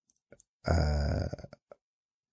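A man's low, drawn-out "uh", a hesitation sound under a second long, with a few faint mouth clicks around it.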